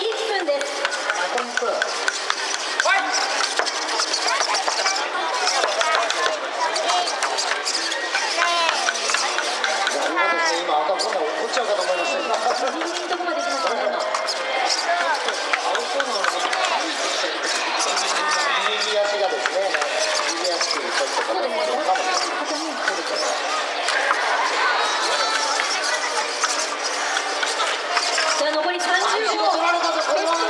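Audience voices and chatter filling a sports hall, with scattered clicks and clatter from small humanoid fighting robots' servos and metal feet on the ring floor.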